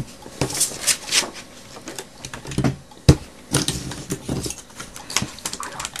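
Paper cut-outs and craft items being handled on a cutting mat: irregular light rustles, taps and clicks, with one sharper knock about three seconds in.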